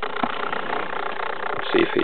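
Startled knob-tailed gecko giving a steady, breathy defensive hiss that cuts off near the end.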